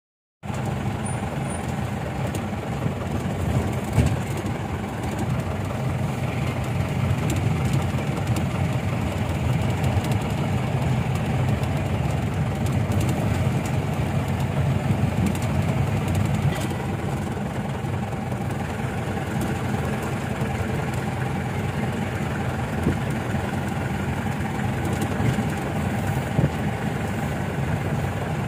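Steady engine and road rumble heard from inside a moving vehicle. A single sharp knock sounds about four seconds in.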